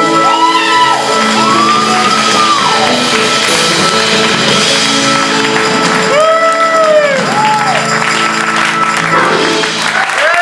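Live rock band near the end of a song: a woman belts long, arching held notes over sustained organ chords, electric guitar and drums.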